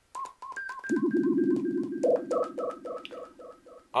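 Homemade one-button synthesizer on an STM32F4 Discovery board making a siren-like tone with a delay effect. It repeats in short chirps about four times a second over a steady buzz that comes in about a second in, and the chirps step up in pitch about halfway through.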